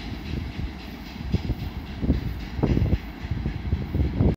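Freight train wagons rolling away on the rails: a low rumble of the wheels with occasional irregular knocks.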